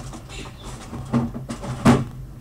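Several knocks and clunks of boxes of ice cream being put away into a freezer, the loudest just before the end.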